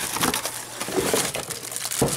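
Clear plastic bag crinkling and cardboard box flaps rubbing as a plastic-wrapped space heater is lifted out of its box: a dense, continuous run of small crackles.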